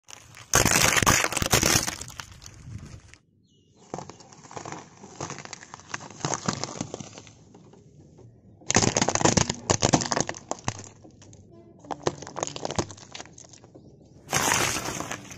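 A car tyre rolling over and crushing objects: plastic toy water guns cracking and fruit squashing, heard as four separate bursts of crunching and cracking. The first and third bursts are the loudest.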